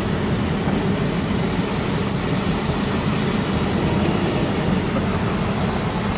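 Steady low rumble with a hiss over it inside a car's cabin: the car's engine, road and air noise while driving in traffic.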